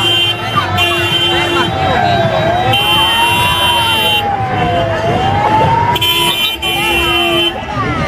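Sirens and horns on parade vehicles driving slowly past: a slow wailing tone rises, falls and rises again in the middle, while steady horn-like tones sound in several short blasts. Crowd chatter runs underneath.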